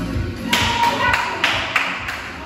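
A person clapping their hands several times in quick succession, sharp claps about a third of a second apart, over background music with a steady beat.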